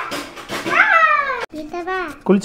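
A young child's long, high-pitched squeal that rises and then falls in pitch over about a second. It cuts off abruptly about halfway through, and a child's talking voice follows.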